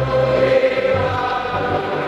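A crowd singing together in unison over instrumental music, with long held notes.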